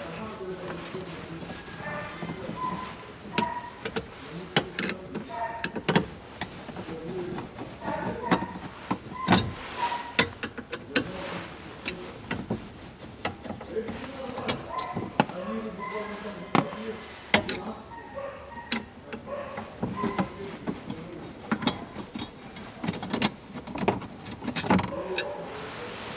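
Scattered clicks, knocks and rattles of plastic dashboard trim and small screws as the trim is unscrewed with a hand screwdriver and pulled loose.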